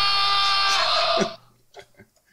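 A sound effect from a soundboard: a steady, buzzing held tone that cuts off abruptly a little over a second in.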